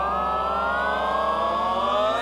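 A long held 'aaah' sung in a high comic voice, sliding slowly upward in pitch over a sustained low backing note.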